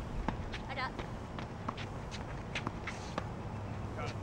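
Tennis play on an outdoor court: a string of short, sharp ticks from racket hits, ball bounces and footsteps, spaced irregularly, over a steady low rumble.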